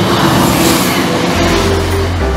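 East Midlands Railway Class 170 Turbostar diesel multiple unit passing close by at line speed: a steady rush of wheels on rail and underfloor diesel engine noise, with a deep low hum coming in about one and a half seconds in.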